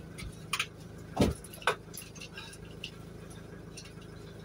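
Light metallic knocks and clicks of a bicycle being handled and shifted in a van's load space, three in the first two seconds, over a steady low hum.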